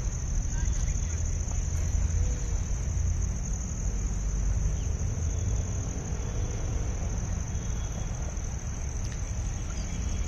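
Steady high-pitched insect chorus, as from crickets, over a continuous low background rumble of the outdoors.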